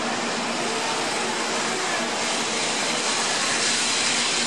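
Shinkansen bullet train rolling out of the station past the platform: a steady rush of wheels and air from the passing cars, the high hiss growing louder from about two seconds in as it gathers speed.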